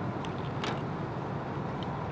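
Steady low background noise of distant traffic, with a single short click about two-thirds of a second in.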